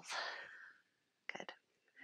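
A woman's breath out, a soft hiss that fades away within the first second, followed by a quiet spoken word.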